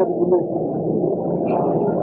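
A man's voice held on one long, steady, drawn-out sound without breaks into syllables.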